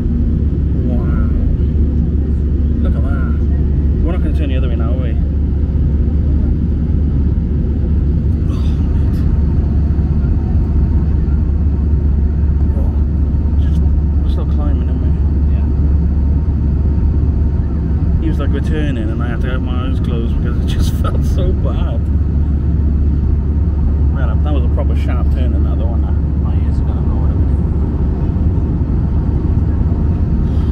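Steady low rumble of an Airbus A320-family airliner's cabin in flight, the engine and airflow noise heard from a seat over the wing. Indistinct voices of nearby passengers come and go in the background.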